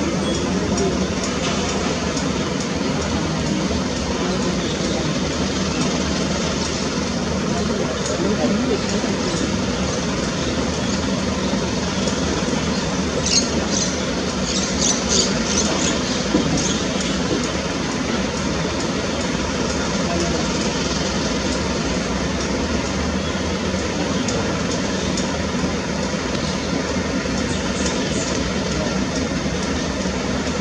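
Steady outdoor ambience of murmuring voices and distant traffic hum, with a short run of sharp, high-pitched ticks or squeaks about halfway through.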